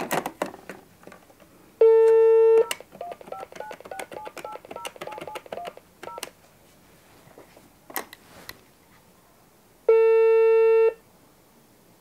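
Telephone handset clicking, a brief dial tone, then a quick run of about eleven keypad tones as a number is dialled. A couple of handset knocks follow, then a one-second ringback tone as the call starts to ring.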